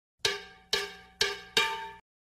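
Four bell-like struck notes, each ringing out and fading, about half a second apart: a title-card sound effect, one note per logo as it pops onto the screen.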